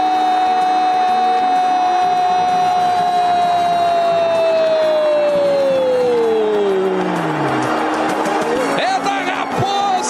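A Brazilian TV commentator's long drawn-out goal call, one held "gooool" shout lasting about six seconds before its pitch falls away, over the stadium crowd. A shorter call follows near the end.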